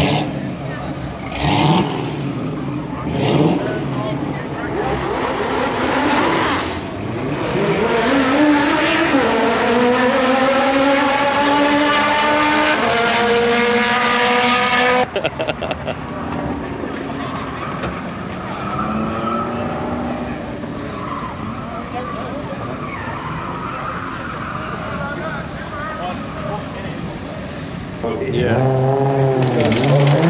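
Car engines revving and accelerating. After a few short blips, one engine climbs steadily in pitch for about eight seconds under hard acceleration and is cut off abruptly halfway through. The second half is quieter, with another engine rising near the end.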